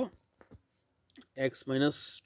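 A man speaking in Bengali math terms, broken by a pause of about a second that holds two faint, short clicks.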